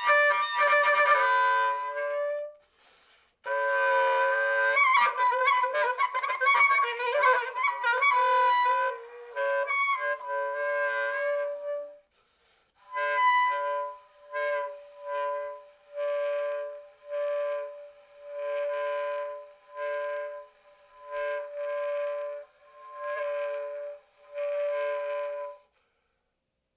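Soprano saxophone played solo: fast, busy runs of changing notes, broken by a brief pause about three seconds in. From about halfway on it plays a string of short, separate notes on nearly the same pitch, roughly one a second, with silences between them.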